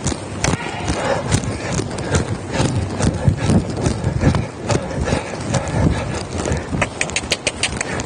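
A young mare trotting on the dirt footing of an indoor arena: a steady rhythm of hoofbeats with the noise of the horse's movement.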